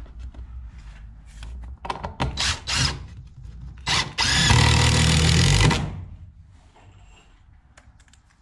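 A few short knocks, then a cordless drill runs steadily for about a second and a half, about halfway through, as it bores into a wooden trim board.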